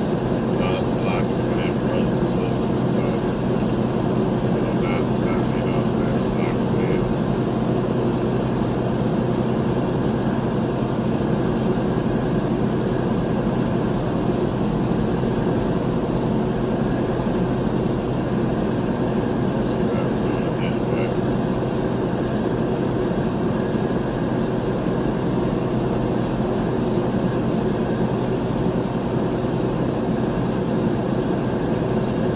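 Steady engine and tyre noise heard from inside a vehicle's cab while driving at highway speed, an even rumble with hiss that holds level throughout.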